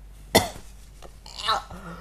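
A man with a cold coughing: one sharp cough about a third of a second in, then a second, longer cough with some voice in it about a second and a half in.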